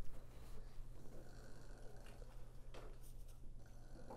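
Faint rustling of a paper apple being tugged at on an artificial tree, over a steady low room hum, with one soft knock near the end.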